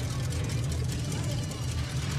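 Vehicle engines rumbling steadily, with voices over them.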